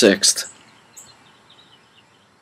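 A man's voice finishing a word, then a pause of low background hiss with a faint click and a few faint, short, high chirps.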